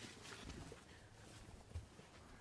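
Near silence: faint background hum with a few soft low thumps, the clearest about three-quarters of the way through.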